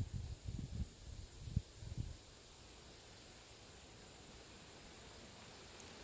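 Faint woodland ambience: irregular low rumbling with a soft knock in the first two seconds, then a steady faint hiss, with high-pitched insect buzzing that comes and goes twice.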